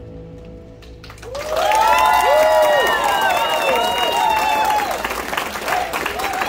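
The held final notes of the live hula music fade out, then about a second in an audience breaks into applause with high whooping cheers that carry on through the rest.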